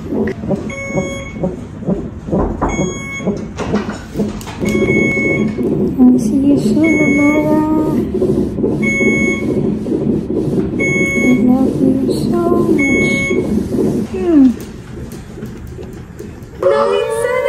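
A medical equipment alarm beeping, one short high tone about once a second, under a person's voice.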